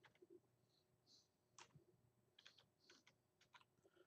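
Faint computer keyboard typing: a handful of separate keystroke clicks, spaced irregularly.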